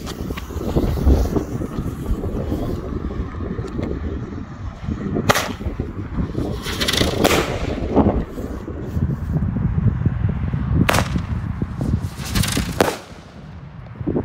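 Thunderking Black Out airbomb fireworks firing: about six sharp bangs, one near five seconds in, a pair near seven seconds and three more between eleven and thirteen seconds, over a steady low rumble.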